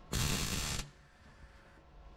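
MIG welder laying a short stitch weld on sheet steel: a single burst of arc crackle lasting a little over half a second, starting just after the opening, then only a low background hum.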